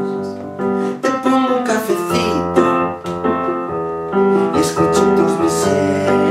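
Nord Electro 2 stage keyboard played with a piano sound: sustained chords that change about once a second.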